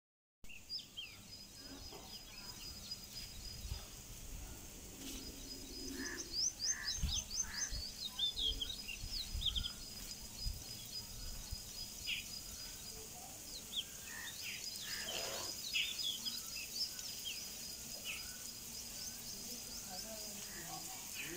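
Several birds chirping outdoors, with many short, quick chirps overlapping throughout and a thin, steady high trill that stops and restarts a few times. A few low thuds of the phone being handled come in around the middle.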